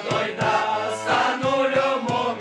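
A group of young men singing a Romanian Christmas carol (colindă) together, accompanied by a piano accordion, with a regular beat.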